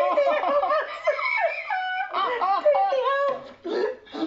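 A woman laughing hard, in long high-pitched wavering runs of laughter broken by short catches of breath about halfway through and near the end.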